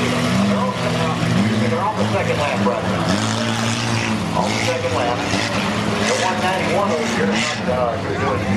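Engines of racing cars and a school bus running hard, their pitch falling and climbing again about once a second as they go around the track, with voices over them.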